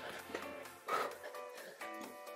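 Quiet background workout music, with a short breathy burst about a second in.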